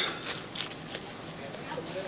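Kitchen knife slicing through a roasted turkey breast: quiet cutting and scraping strokes against the meat and cutting board.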